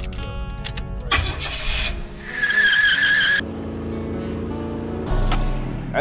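Car sounds over background music: a brief rush of noise about a second in, then a high, wavering tire squeal lasting about a second, followed by a steady engine note with a deep rumble near the end.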